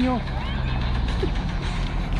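A steady low hum, like a motor vehicle running nearby, that fades out about a second and a half in, with a few brief vocal sounds from a man.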